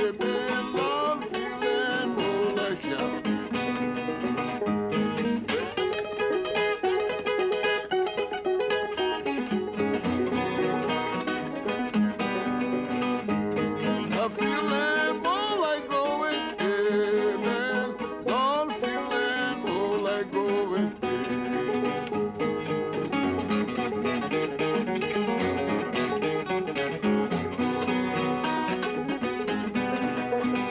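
Acoustic guitar fingerpicked in a blues-gospel style, played together with a banjo in a steady instrumental passage.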